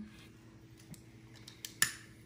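Trigger of a long-nosed utility lighter being clicked: a few faint clicks, then one sharp click near the end.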